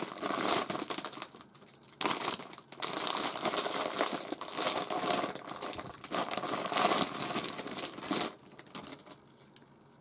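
Crinkly wrapping being torn open and crumpled by hand to unpack a plush toy, in dense irregular crackling bursts with a short pause about two seconds in, dying down to faint handling about eight seconds in.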